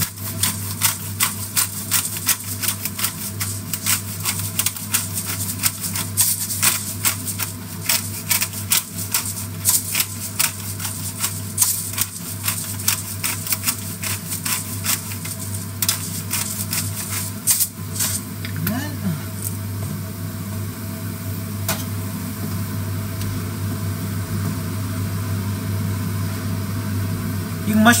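A twist-style black pepper grinder being turned in a rapid run of clicks for about the first eighteen seconds, over a pan of vegetables frying. After the grinding stops, the pan's steady sizzle and a low hum carry on.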